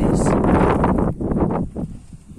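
Wind buffeting the microphone: a loud, gusty rumbling noise that drops away near the end.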